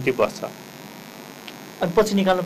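A short pause in a man's speech, filled only by a faint, steady electrical hum. The speech trails off just after the start and resumes near the end.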